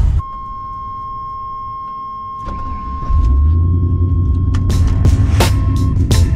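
A steady electronic tone for about two and a half seconds. Then, from about three seconds in, music with a drum beat plays over the low rumble of the pickup's swapped 5.3 L V8 as it drives.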